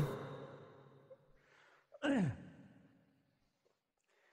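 A man's single short sigh about two seconds in, falling in pitch, amid otherwise near silence.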